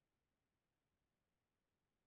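Near silence: only a faint, steady noise floor.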